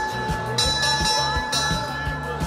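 A wall-mounted metal bell rung by hand with its rope, giving a sustained ringing tone that is struck again about half a second in. Background music with a steady beat plays underneath.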